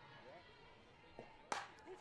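Softball bat hitting a pitched fastball once, a single sharp crack about one and a half seconds in, chopping the ball into play. Faint background voices run underneath.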